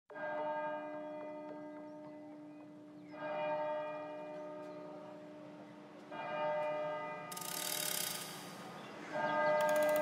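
Opening of a psybient electronic track: a bell-like tone struck about every three seconds, each strike ringing out and fading, over a low held note. A hissing swell rises in about seven seconds in.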